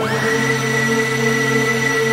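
Synthesized cinematic sound-effect sample from a trap reversed-effect pack: a sustained electronic drone of several held tones. The top tone swoops sharply up at the start and then holds steady.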